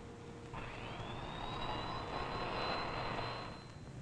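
Photoresist spin coater spinning a silicon slice up to speed: a motor whine that climbs in pitch and then holds high, over a rushing hiss, starting about half a second in and dying away shortly before the end.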